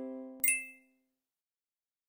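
The final chord of a short outro jingle ringing out and fading, then about half a second in a single bright ding sound effect that dies away quickly.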